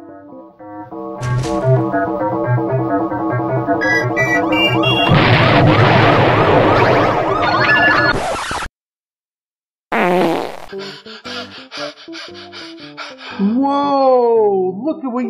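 Edited-in 'magic' sound effects: a rising musical run over a beat swells into a loud rushing whoosh that cuts off suddenly. After a second of silence comes a burst and a rapid fluttering run of pulses.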